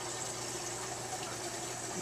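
Aquarium aeration and water circulation: a steady rushing, bubbling water noise from air bubbles streaming up through a large fish tank, with a faint low hum under it.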